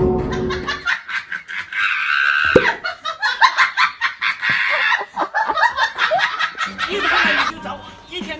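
People laughing over background music, in a long run of quick bursts after about the first second.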